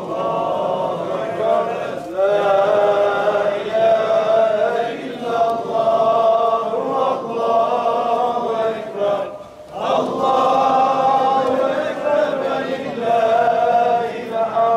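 Islamic religious chanting by men's voices, sung in long, drawn-out notes that bend in pitch, breaking off briefly about two-thirds of the way through.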